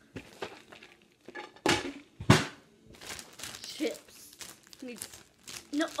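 Two sharp thumps about two seconds in, then a foil-plastic potato-chip bag crinkling as it is handled.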